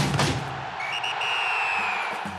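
Closing sting of a percussive TV theme: a hit, then a crowd-like noise wash and a single long, high whistle blast like a referee's whistle, starting about a second in and sinking slightly in pitch as it fades.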